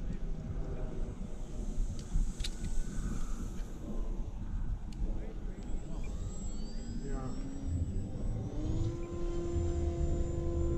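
Model airplane motors whining overhead, their pitch sliding up and down as the planes pass. Near the end one rises in pitch and settles into a steady hum. A low rumble runs underneath.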